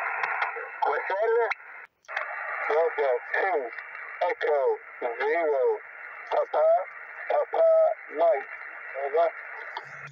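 A distant station's voice received on single-sideband through a Yaesu FT-817 on the 20 m amateur band: thin, narrow-band speech over a steady hiss of band noise, with a brief dropout about two seconds in.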